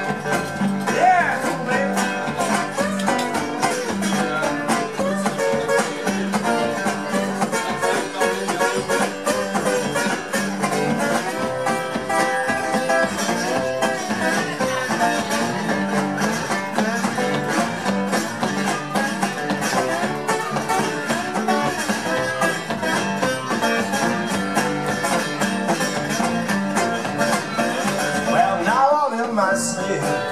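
Two guitars playing an instrumental blues break, one of them a hollow-body archtop electric, picked in a steady repeating rhythm.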